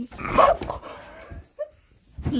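A dog barks, loud and short, in the first half second, and the sound trails off over the next second.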